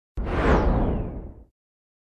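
Whoosh sound effect marking the intro title card: a sudden rush with a deep rumble under it and a high sweep falling in pitch, fading out over about a second.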